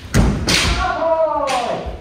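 Kendo practice on a wooden dojo floor: a heavy stamping thud at the start, then a long drawn-out kiai shout falling in pitch, with a sharp strike about a second and a half in.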